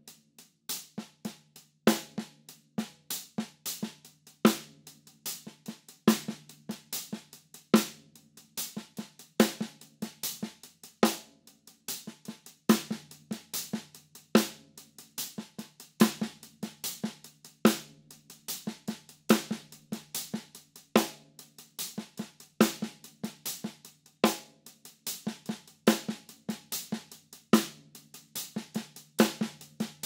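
Drum kit played open-handed: a broken sixteenth-note hi-hat pattern runs as a steady stream of strokes under regular snare backbeats, with quieter double ghost notes on the snare.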